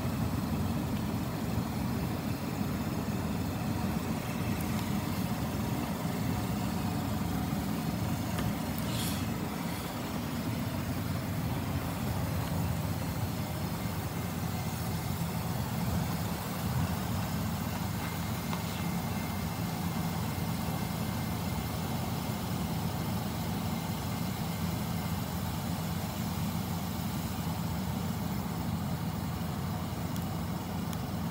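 Freight train of autorack cars rolling past: a steady low rumble of wheels on rails, with a brief high squeal about nine seconds in.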